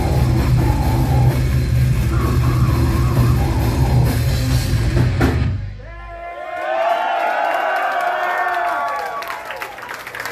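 Heavy metal band playing live: pounding drum kit, cymbals and distorted guitars, with the song cutting off abruptly about five and a half seconds in. The crowd then cheers and whoops, and clapping starts near the end.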